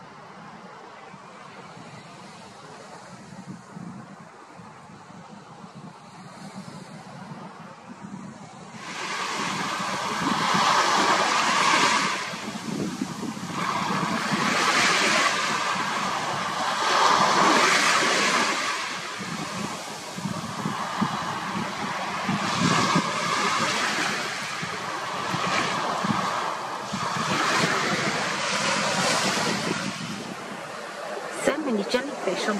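Small sea waves breaking and washing up a sandy beach. The sound swells and fades in surges a few seconds apart, louder after about nine seconds than in the steadier, quieter sea noise before.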